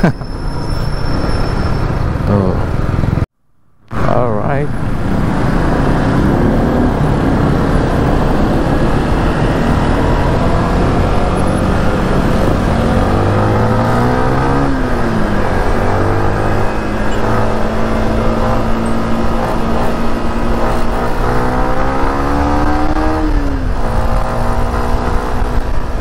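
Yamaha Sniper underbone motorcycle engine running under way with wind and road noise. The engine note climbs and drops with the throttle and gear changes about halfway through, holds steady for several seconds, then falls and rises again near the end.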